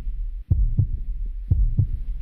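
Heartbeat sound effect: a low double thump repeating about once a second, over a steady low hum.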